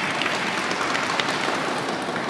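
Audience applauding, with many scattered sharp claps, thinning out near the end.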